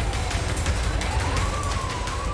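Police car siren wailing, one tone sliding slowly down and up, over a steady low rumble.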